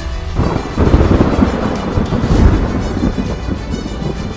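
Thunder: a sudden crack about half a second in, then a loud rolling rumble that swells twice and slowly dies away, over background music.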